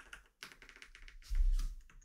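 Computer keyboard typing: a run of quick key clicks, with a louder dull thump about one and a half seconds in.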